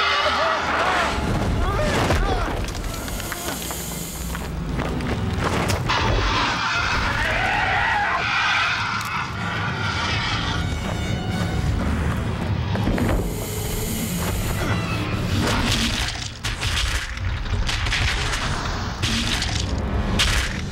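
Action-scene film soundtrack: dramatic music mixed with booms and crashing impacts.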